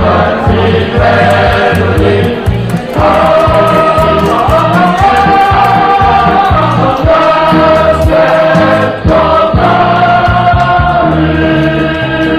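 Music with choral singing: long held sung notes over a bass line that moves in steady steps.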